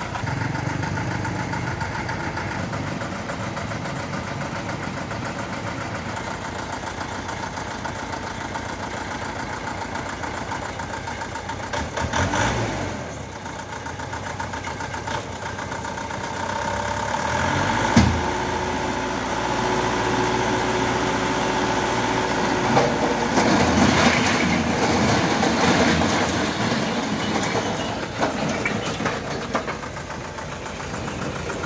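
Thaco Forland dump truck's diesel engine running, moving and then holding a steady higher note from about 18 s as the tipper raises the loaded bed. From about 24 s bricks slide off and clatter down.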